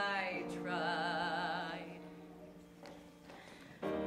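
A woman sings a long held note with vibrato into a microphone over a pop backing track. The note fades and the accompaniment thins to a brief lull, then the backing track comes back in fully near the end.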